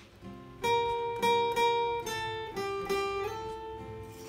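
Steel-string acoustic guitar played solo, picking a single-note melody: a string of clear plucked notes begins about half a second in, a few of them sliding up into the next pitch.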